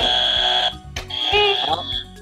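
Quiz buzzer sounding twice: a steady, high electronic tone lasting under a second, then a second buzz starting about a second in, as contestants press to answer.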